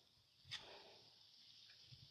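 Near silence: faint outdoor background with one brief, faint click about half a second in.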